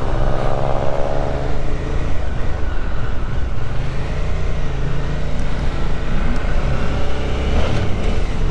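Suzuki V-Strom motorcycle engine running on the road, its note rising and falling with speed, over steady wind and road noise.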